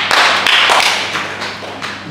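Audience applauding: a burst of clapping that starts suddenly and fades over about two seconds.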